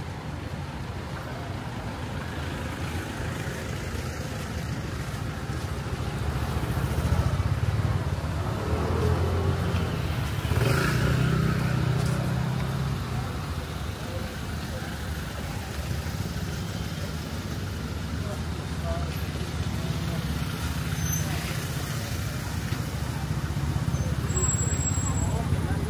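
Night-time city street ambience: a steady hum of traffic with people talking nearby, and a vehicle passing about halfway through, the loudest moment.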